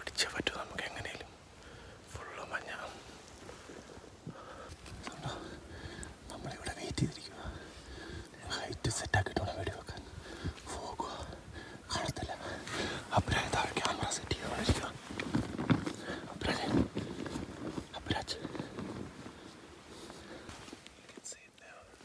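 Whispered speech: men talking in hushed voices.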